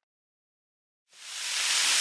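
Silence, then about a second in beef stew meat starts sizzling as it browns in a large yellow pot with cooking spray, the sizzle fading in and holding steady.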